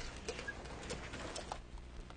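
Lecture-room background: a steady low hum with scattered faint clicks, knocks and rustles.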